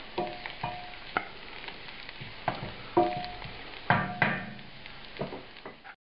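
Diced onions and celery sizzling in butter in a large nonstick skillet, while a wooden spatula scrapes and knocks against the pan in irregular strokes as they are stirred. The sound cuts off suddenly at the very end.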